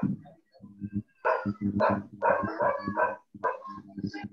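A quick run of short, sharp sounds, about two or three a second, starting about a second in, over a low steady hum, heard through a video-call microphone.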